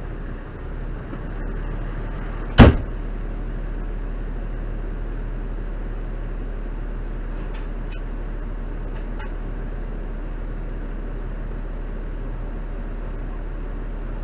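Steady low rumble of an idling fire engine, with one loud sharp bang about two and a half seconds in and a few faint clicks later on.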